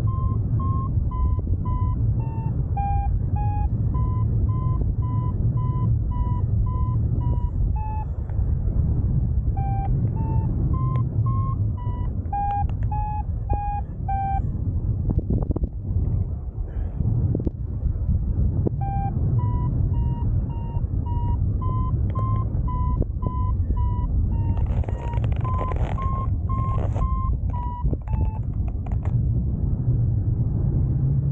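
Paragliding variometer beeping in short tones about twice a second, its pitch stepping up and down a little; the beeping is the sign of the glider climbing in lift. It stops for a few seconds midway, then resumes. Steady wind rush on the microphone runs underneath, with a few stronger gusts near the end.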